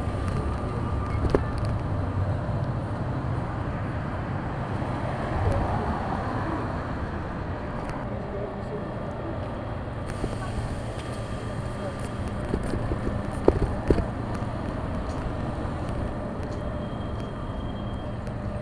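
City street ambience: a steady traffic rumble with indistinct voices, and two sharp knocks close together in the second half.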